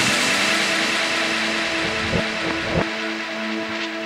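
Electronic music breakdown with the drum break dropped out: held synth tones over a hissing noise wash that slowly fades, with a few soft low thumps past the middle.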